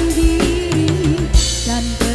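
Live dangdut band music: a long held melody note that wavers in pitch over a drum kit, with sharp drum and cymbal hits and a steady bass underneath.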